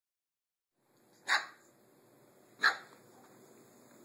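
A small puppy barking twice, two short barks about a second and a half apart.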